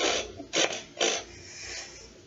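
Three short, sharp puffs of breath about half a second apart, then a fainter one: a stifled laugh snorted out through the nose by a boy holding water in his mouth.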